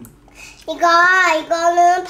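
A young girl's high voice in a sing-song chant, holding two long drawn-out notes from just under a second in.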